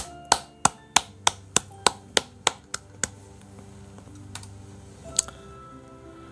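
One person clapping, about eleven claps at roughly three a second, the last ones softer, then a single click about five seconds in. Soft background music plays underneath.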